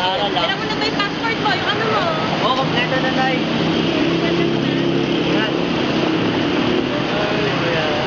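Street traffic noise with a motor vehicle's engine running steadily for a few seconds in the middle, under people talking.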